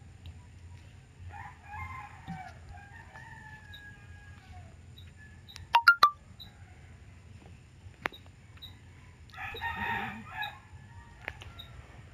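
A rooster crowing in the background: one long crow starting about a second in, and another shorter call near the end. A few sharp clicks, the loudest sounds here, come around six seconds in.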